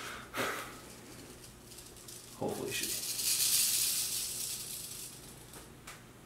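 Mexican west coast rattlesnake shaking its tail rattle, a dry high buzz that starts about two and a half seconds in, swells, then fades away near the end. It is the snake's warning rattle while it is being held.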